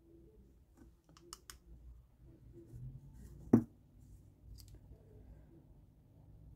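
Soft small clicks and taps from handling a nail tip and a chrome-powder applicator brush, with one sharp, louder tap about three and a half seconds in.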